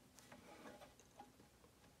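Near silence, with a few faint light ticks of 3D-printed plastic pieces being handled as the string-held structure is lifted back into tension.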